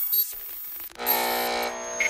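Short electronic sound-logo jingle with bright, bell-like chiming tones; a fuller, richer tone comes in about halfway through.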